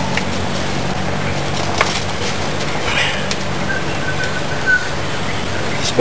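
A steady low mechanical hum runs under a few light clicks and rustles from the bundle of broom bristles being handled. A faint thin chirp sounds about four seconds in.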